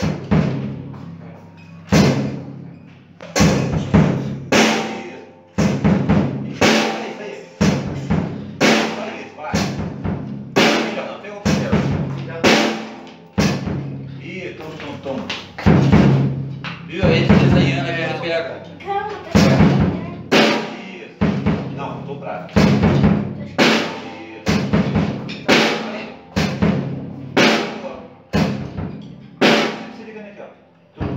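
A beginner playing a drum kit in a slow, steady practice beat of bass drum and snare strokes, about one and a half strokes a second.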